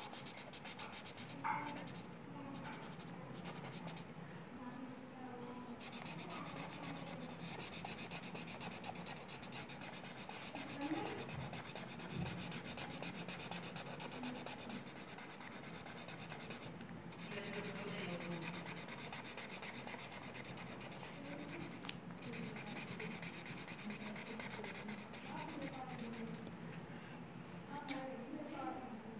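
Felt-tip marker scribbling on paper while colouring in. A fast run of short back-and-forth strokes that breaks off briefly a few times.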